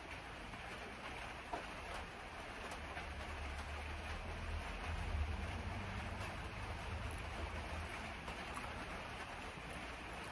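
Steady rain hiss, with a low rumble that swells for a few seconds in the middle and a few faint clicks.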